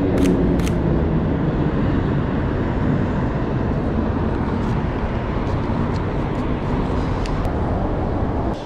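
Road traffic passing close by: a vehicle's engine note falls in pitch in the first second, then a steady traffic rumble. Two sharp camera shutter clicks in the first second end a quick run of shots.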